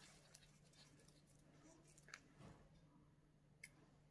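Near silence: room tone with a faint steady low hum and a few faint ticks.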